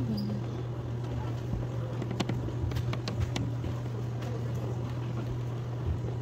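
Room noise in a bingo hall between number calls: a steady low hum with scattered faint clicks and knocks.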